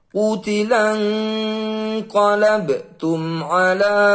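A man reciting the Quran in slow, melodic murottal (tartil) style, chanting the Arabic in two phrases with long, steadily held notes.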